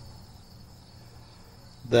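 Faint steady high-pitched tone over a low hum in a pause between spoken phrases, like an insect trill or an electrical whine; the man's voice starts again right at the end.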